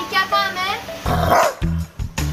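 A Rottweiler barks once, a short burst about a second in, over background music.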